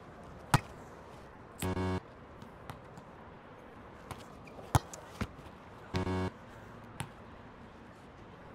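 A volleyball being hit and bouncing on a hard outdoor court: four sharp slaps, about half a second in, twice near five seconds and once at seven seconds. A short flat buzzing tone sounds twice, about one and a half seconds in and again at six seconds.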